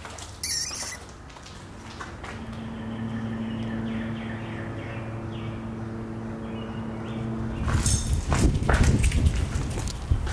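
Footsteps crunching over rubble and loose debris on a concrete floor, loud and irregular, starting near the end. Before them a steady low drone hums in the background for several seconds.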